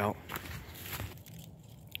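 A few light footsteps through dry fallen leaves, with a sharp click near the end.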